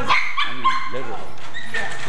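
Dogs barking and whining, with several short high-pitched calls and thin drawn-out whines.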